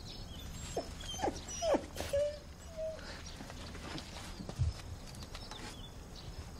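A dog whimpering: three short falling yelps about a second in, then two brief level whines. A dull low thud follows a couple of seconds later.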